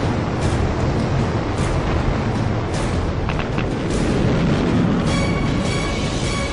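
Dramatic soundtrack music over a loud, steady rocket-like roar, the sound laid over the animation of the sky crane's descent-stage thrusters lowering the Curiosity rover; a few held tones join about five seconds in.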